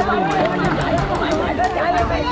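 Several young male voices chattering and calling over one another, with short splashes of water as they dive and wade in shallow water.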